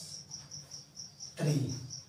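Steady high-pitched insect chirping, about four short chirps a second, running on unbroken.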